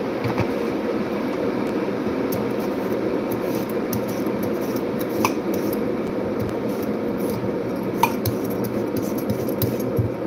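A potato being peeled with a hand-held vegetable peeler: short, irregular scraping strokes and light clicks, over a steady rushing background noise.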